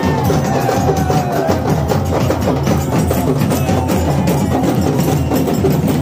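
Several two-headed, rope-laced dhol drums beaten together in a fast, dense folk-dance rhythm.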